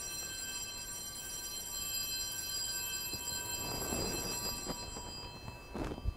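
An altar bell rung at the elevation of the chalice after the consecration, its bright many-toned ring dying away over about five seconds.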